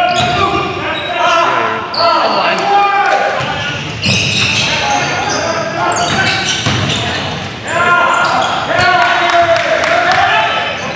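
Basketball bouncing on a wooden gym floor during play, mixed with players' voices, all echoing in a large gym.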